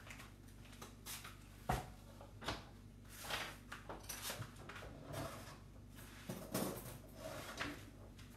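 Scattered knocks and short clatters of kitchen things being moved and set down, with a couple of sharp knocks in the first half.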